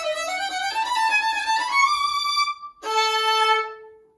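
Solo violin, bowed: a rising run of notes leads to a sustained high note. After a brief break, a lower held note closes the phrase and fades away near the end.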